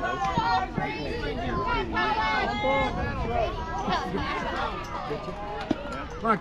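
Several people talking and calling out over one another, with a single sharp knock near the end.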